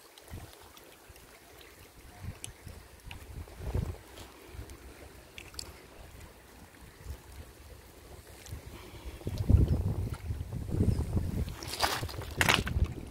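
Wind buffeting the microphone: low, uneven gusts, faint for most of the time and much stronger in the last few seconds. A couple of sharp clicks come near the end.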